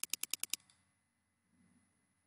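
A computer mouse's scroll wheel clicking rapidly, about seven sharp ticks in half a second, as the map view is zoomed in.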